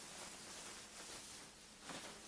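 Faint rustling of a white fabric garment cover being lifted and handled, over low room hiss.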